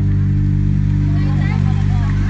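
Backing music holding one steady low chord at the close of a song.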